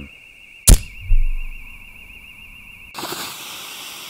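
Cartoon sound effects: a sharp click, then a low thump that dies away, about a second in. A steady hiss starts about three seconds in.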